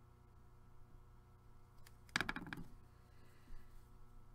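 A short clatter of plastic clicks and knocks on the table about two seconds in, as a water brush pen is set down and a pencil picked up, with a fainter tap a second later; otherwise quiet room tone.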